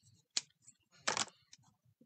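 A sharp click about a third of a second in, then a short scratchy rustle about a second in, from craft supplies being handled on the desk: a marker and a clear acetate sheet.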